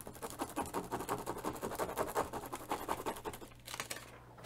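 Rapid scratchy rubbing of a hand over a thin plastic stencil pressed onto a canvas, many quick strokes one after another, easing off near the end.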